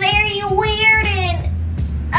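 A high voice singing one long, wavering note for about a second and a half, over background music.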